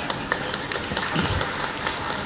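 Background noise of an audience in a hall, with scattered light claps and a brief faint voice a little after a second in.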